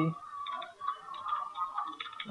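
Computer keyboard being typed on, a run of quick, irregular key clicks.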